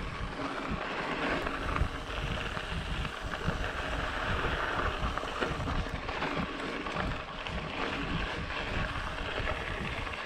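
Mountain bike rolling fast downhill on dry dirt singletrack: steady tyre rush over the trail with wind buffeting the camera microphone and a few knocks from bumps.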